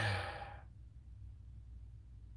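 A man's short breathy sigh, lasting about half a second, then quiet room hum.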